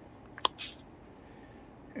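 Miniature metal toggle switch flipped to power on: one sharp click about half a second in, followed by a brief softer hiss.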